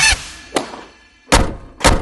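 Sound effects of an animated logo outro: a sharp hit with a ringing tail of about half a second, a lighter hit just after, then two hard thuds about half a second apart near the end.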